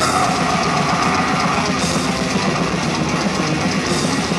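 Live death metal band playing at full volume: distorted electric guitars and bass over fast drumming with constant cymbals. A held note rides over the mix for the first second and a half.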